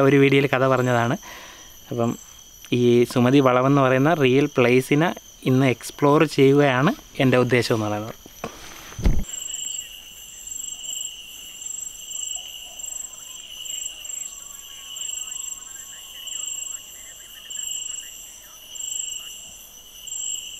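Night insects chirping: a high, steady trill that pulses roughly once a second. It follows a man talking in the first eight seconds and a sharp click about nine seconds in.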